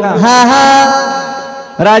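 A man's voice chanting a long held note in a sing-song devotional style. It fades away about a second and a half in, and the voice comes back in just before the end.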